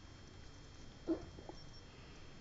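A pet animal makes a short sound about a second in, followed by a fainter one half a second later.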